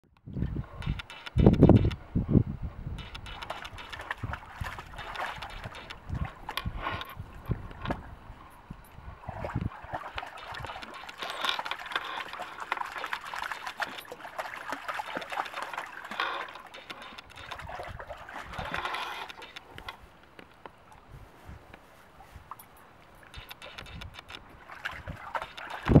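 A cockapoo wading and splashing through a shallow stream, water sloshing irregularly around its legs. A few heavy low thumps come about a second and a half to two and a half seconds in.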